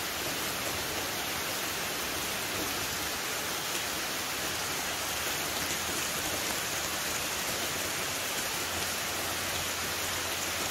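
Rain falling steadily on trees and foliage: a dense, even hiss that holds without a break.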